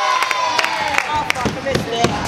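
A drawn-out voice fading out in the first second, then scooter wheels rolling on a skatepark ramp with several sharp clicks.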